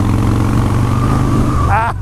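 Harley-Davidson Street Bob's air-cooled V-twin engine running steadily at cruising speed, mixed with wind noise on the handlebar microphone. A man's voice cries out near the end.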